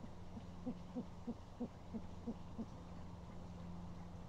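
An owl hooting: a quick run of about eight short, low hoots, about three a second, over a steady low electrical hum.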